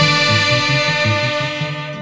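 Closing chord of a Peruvian orquesta típica: saxophones and the rest of the band hold one long final chord over quick repeated low notes, fading away toward the end.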